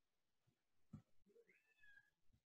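Near silence: faint room tone with a soft thump about halfway and a faint short call near the end that rises and then holds.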